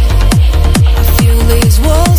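Uplifting trance music: a steady kick drum about three beats a second under a long held note that slides up near the end.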